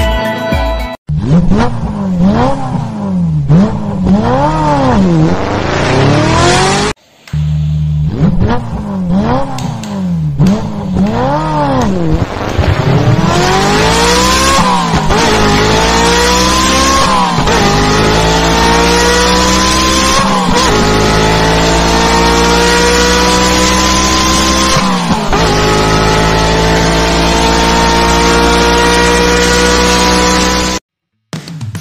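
Sports-car engine sound effect. It revs up and down about once a second for the first half, then climbs in long rising sweeps that drop back at each gear change.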